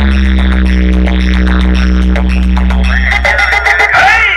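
Very loud electronic dance music from a towering DJ competition speaker stack, dominated by a heavy held bass note that drops out about three seconds in, giving way to sweeping synth sounds.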